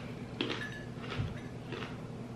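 Quiet chewing of a bite of ice cream sugar cone, with a few faint soft crunches.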